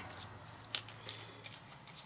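A few faint, sparse clicks and light handling noise from small screws and parts being picked up and handled by hand.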